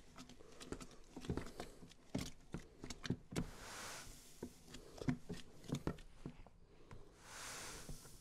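Crushed two-row malt poured from a plastic bucket into a cooler mash tun of hot water, in two soft hissing runs about midway and near the end. Scattered light clicks and knocks come from a metal spoon stirring the grain in to break up dough balls while mashing in.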